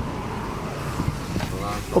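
A car idling with a steady low rumble as someone climbs into the back seat through the open door, with a few light knocks and rustles.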